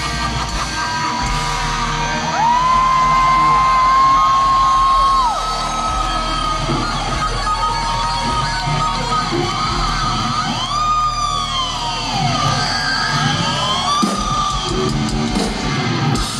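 A rock band playing live through a large PA: electric guitars, bass and drums, with long held high notes early on that later bend up and down in pitch.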